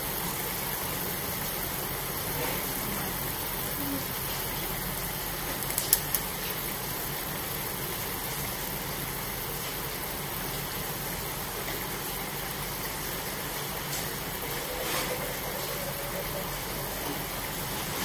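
Water boiling hard in a wok on a stove, a steady rushing hiss, with a couple of sharp clicks about six seconds in from a metal spatula against the wok.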